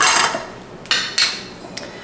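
Glass jar of pizza sauce having its lid twisted off, a short burst of noise right at the start, then a few sharp clinks about a second in as the lid is set down and a spoon goes into the jar.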